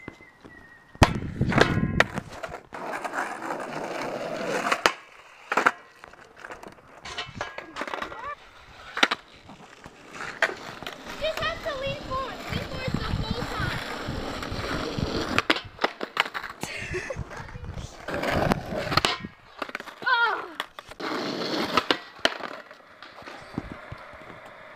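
Skateboard wheels rolling over rough asphalt, broken by a series of sharp clacks as the board's deck and tail strike the ground during trick attempts.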